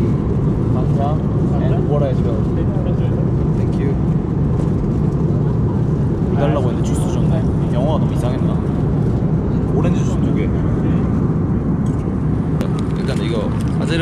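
Steady, loud drone of an airliner cabin in flight, with brief voices over it.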